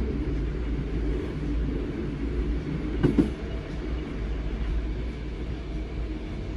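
Inside a moving ÖBB class 4020 electric multiple unit: a steady low rumble of wheels and running gear on the track, with a quick pair of knocks about three seconds in as the wheels pass over a joint in the track.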